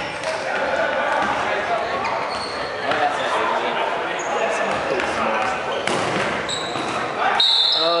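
Rubber dodgeballs thrown, hitting and bouncing on a hardwood gym floor, a few sharp knocks standing out, under indistinct shouts and chatter from the players, all echoing in a large sports hall. Short high squeaks, such as sneaker soles make on the wooden floor, come through now and then.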